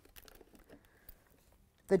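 A few faint clicks and light rustles in the first second as a clothes iron is picked up and handled over fabric on a work table, then quiet; a spoken word starts at the very end.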